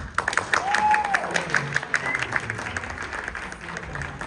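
Audience applauding at the end of a song, the clapping gradually thinning, with one short high call from the crowd about a second in.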